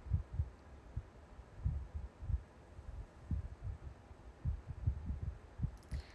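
Irregular soft low thumps and rumbles on a phone microphone, about ten spread unevenly over a few seconds: handling noise as the phone is held and moved.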